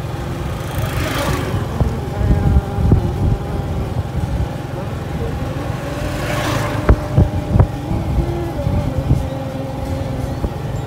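Motorcycle engine running steadily while riding, with a pulsing low rumble and wind rush. Two brief rushes of noise come about a second in and again about six seconds in, and a few sharp knocks follow around seven seconds.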